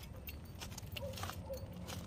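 Faint rustling and scuffing of steps through grass and gravel, with scattered light ticks over a low steady rumble.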